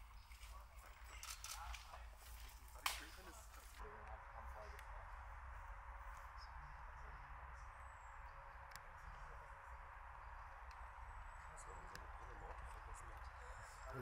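Faint outdoor ambience with a steady low rumble. A few sharp clicks and one louder knock come in the first four seconds, then an even hiss sets in after about four seconds.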